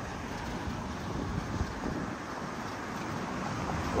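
Steady rush of wind on the microphone mixed with the hum of road traffic, with no distinct events.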